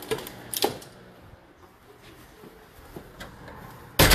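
A few light clicks and taps in a tiled room, with a sharper knock about half a second in and a louder thump right at the end.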